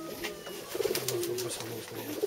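Domestic pigeons cooing, a run of low, evenly pulsing coos starting just under a second in.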